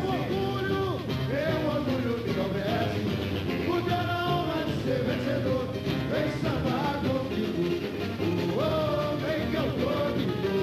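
A samba-enredo sung over a samba school's bateria, the massed samba percussion, playing continuously.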